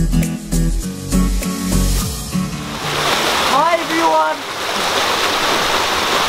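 Background music with a steady beat cuts off a little over two seconds in. Steady rushing water of a mountain stream follows, with a brief voice about a second after the cut.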